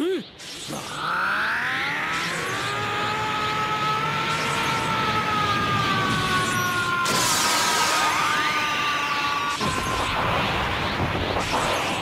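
Anime power-up scream: Vegeta's male voice yelling in one drawn-out cry held for about nine seconds, its pitch drifting slowly down, over a steady rushing energy-aura effect.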